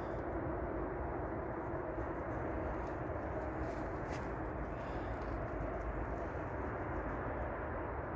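Steady low background rumble with no distinct event, and a faint click about four seconds in.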